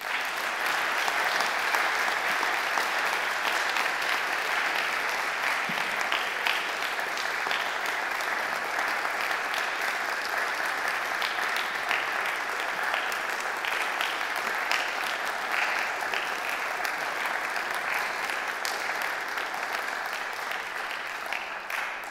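Audience applauding: dense, steady clapping that starts suddenly and tapers off near the end.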